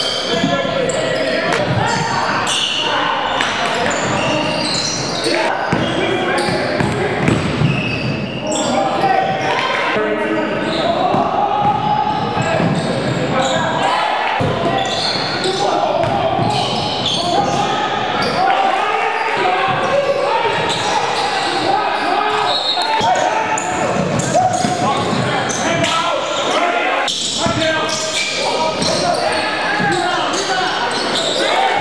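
Live game sound in a basketball gym: a basketball bouncing on the hardwood court amid indistinct voices of players and spectators, echoing in the large hall.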